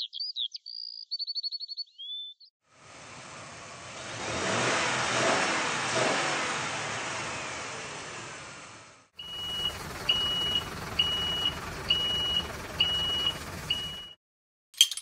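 Chirping for the first two seconds, then a vehicle engine sound that swells and fades over about six seconds and cuts off abruptly. Then an engine running under a reversing beeper that beeps six times, about once a second.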